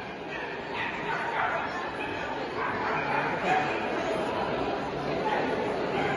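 A dog barking amid the chatter of a crowd in a large indoor hall.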